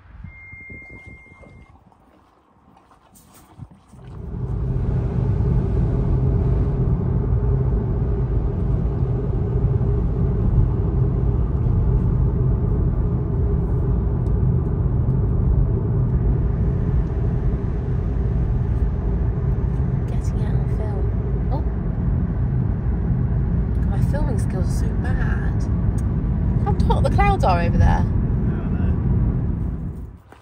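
Road and engine noise inside a moving car: a steady rumble with a low hum that starts suddenly about four seconds in and stops abruptly at the end. A voice is heard briefly near the end.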